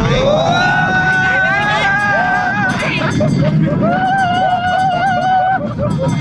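Two long, wavering screams from roller coaster riders, each held for about two seconds, over the low rumble of the coaster running on its track.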